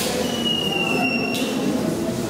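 A thin, high-pitched squeal, sliding slightly down in pitch, lasts about a second and a half over the murmur of a crowd talking in a large room.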